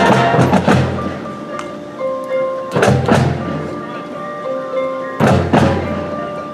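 Marching band music: mallet percussion and chimes holding sustained notes, broken by three loud accented hits with drums, roughly two and a half seconds apart.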